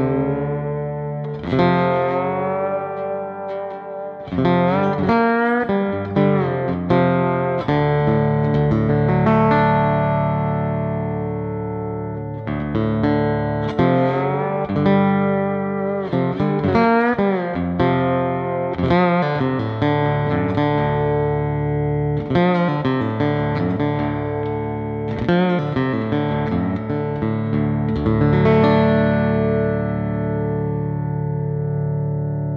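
Beard Road-O-Phonic resonator lap steel played through its pickups with fingerpicks and a slide bar: single notes and chords gliding up and down in pitch, with fresh picked attacks about every second and chords left ringing.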